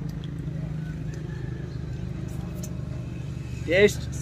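A steady low motor hum runs throughout, with a few faint clicks. Just before the end there is a short, loud rising vocal sound.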